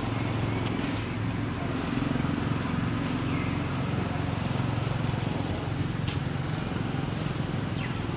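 Steady low hum of a running motor, with a brief high falling chirp about three seconds in.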